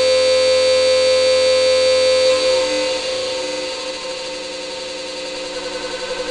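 Harsh, buzzing granular-synthesizer drone (RTGS-X software) steered by webcam motion tracking. A loud steady tone holds for the first couple of seconds, then drops in level and starts to waver, with a fast pulsing flutter setting in near the end.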